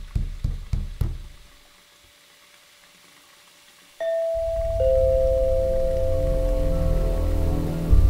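Several quick bangs on a door in the first second, then a pause, then from about four seconds in a dark film score: long held tones over a low drone.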